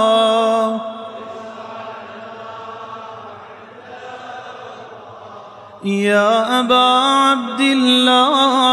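Male reciter chanting a supplication in melodic Arabic with a wavering, ornamented voice. A long held note ends about a second in, the sound drops to a softer, echoing stretch, and a new loud ornamented phrase begins about six seconds in.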